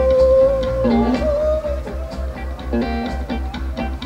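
Live blues band: a held sung "ooh" note for about the first second, then guitar playing over a steady, evenly repeating low bass pulse.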